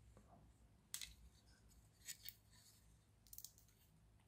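Faint clicks and snips of support material being trimmed and broken off a 3D-printed plastic part, a few separate ticks over otherwise near silence.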